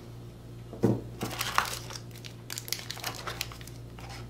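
Plastic packaging crinkling as small accessories are handled in and out of a cardboard box, with a soft knock about a second in and scattered crackles.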